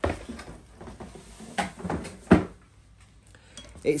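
Handling clatter as the parts box and a bag of metal screws are moved on a table: a few sharp clicks and knocks, the loudest about two and a half seconds in, with light rustling between.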